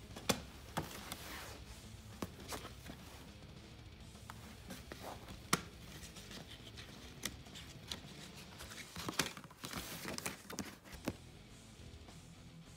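A plastic CD jewel case and its paper booklet being handled: sharp plastic clicks just after the start and about five and a half seconds in, and paper rustling around ten seconds in as the booklet is pulled out and opened. Quiet background music plays underneath.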